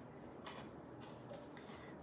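Faint light clicks as a metal pressure-cooker stand is handled while an egg bite mold is loaded onto it.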